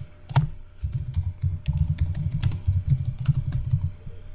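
Computer keyboard typing: a single click, then from about a second in a fast, continuous run of keystrokes as a short phrase is typed.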